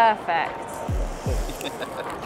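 Cardboard box flaps being pulled open with packaging rustling, after a short laugh. Under it runs background music, with two deep falling bass notes about a second in.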